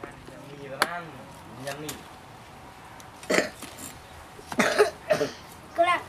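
A person's voice in a handful of short, separate bursts, brief grunts or exclamations rather than sentences, spread through the few seconds.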